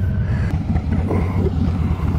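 Harley-Davidson motorcycle V-twin engine running slowly at low speed, a steady low note.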